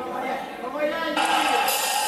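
A voice heard through the hall's loudspeakers, echoing in the room; about a second in, a louder, steady wash of sound comes in over it.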